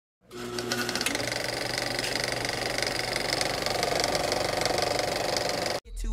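A steady, fast mechanical rattling sound that starts a moment in and cuts off suddenly just before the end.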